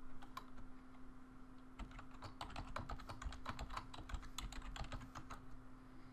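Computer keyboard typing: a couple of single keystrokes, then a quick run of keystrokes starting about two seconds in and lasting some three and a half seconds, as a password is typed in.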